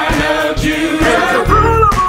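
Gospel song: a male lead singer and a choir singing over a band of piano, drums and organ.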